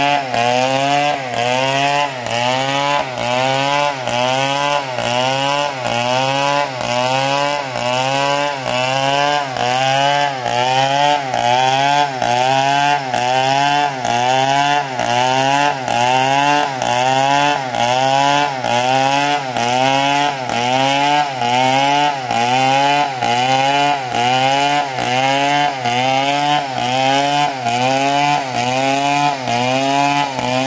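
STIHL two-stroke chainsaw ripping lengthwise through a palm log, running at high revs under load. The engine's pitch dips and recovers in a steady rhythm, about three times every two seconds, as the chain bites and clears along the cut.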